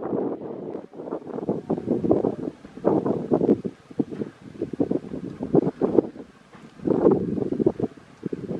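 Wind buffeting the microphone in uneven gusts, with the loudest gusts about half a second in, around three seconds in and about seven seconds in.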